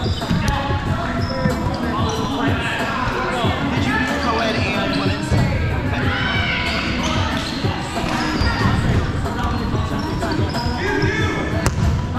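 Foam dodgeballs bouncing and thudding on a hardwood gym floor again and again, with players' voices calling out over them.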